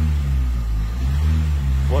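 Renault Mégane 3 dCi diesel engine idling, a steady low drone heard from inside the car's cabin.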